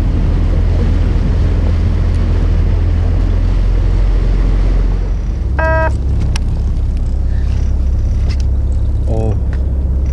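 Fishing boat's engine running steadily with a low rumble. A short high call cuts in briefly about halfway through.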